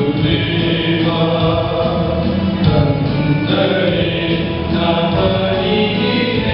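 Church choir singing a Tamil Christian hymn, many voices together in a steady, continuous line.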